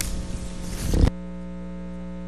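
Electrical mains hum and buzz on a broadcast audio line. A rough hiss stops abruptly about a second in, leaving only the steady hum.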